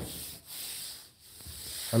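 Faint rubbing and handling noise, in two soft stretches with brief lulls between them.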